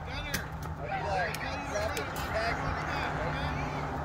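Distant voices of youth baseball players and spectators calling out and chattering, with no single loud call, over steady low background noise.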